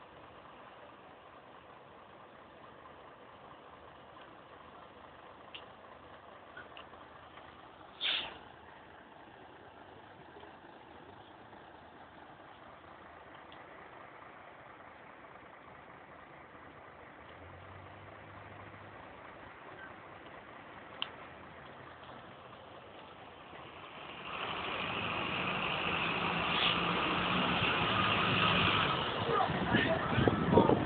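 Bus station background of idling bus engines, with one brief sharp noise about eight seconds in. From about twenty-four seconds a single-deck bus's diesel engine grows loud as the bus pulls past close by.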